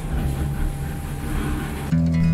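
Steady low rumble and rattling of a moving rail car, heard from inside the cabin, with a faint mechanical hum underneath.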